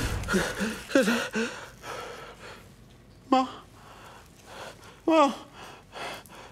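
An elderly woman's short gasping cries of 'ah', two sharp ones falling in pitch about three and five seconds in, after some brief mumbling at the start. She is reacting to the cold from an air conditioner set too cold.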